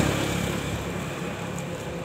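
A motor vehicle engine running with a steady low hum that grows slightly fainter.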